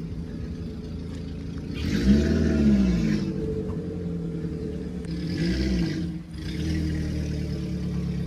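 A motor vehicle engine running steadily, with two brief revs that rise and fall in pitch, one about two seconds in and a shorter one around five and a half seconds.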